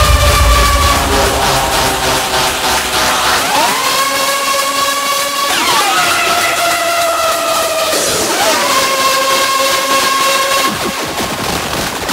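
Hardcore DJ mix in a breakdown: a synth lead in repeated phrases that swoop up and down in pitch. The kick drum and bass drop out about a second in.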